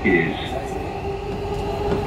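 Dubai Metro train running, heard from inside the carriage: a low rumble with a steady whine. A brief voice comes in at the very start.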